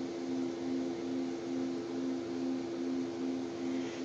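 A steady machine hum made of two low tones, the lower one pulsing evenly about three times a second.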